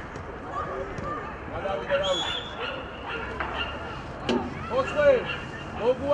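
Players and coaches shouting short calls across a football pitch, the loudest about five seconds in, with a single sharp knock just after four seconds.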